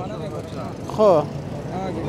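Speech: a man says a short word about a second in, over a steady background hum, likely street traffic.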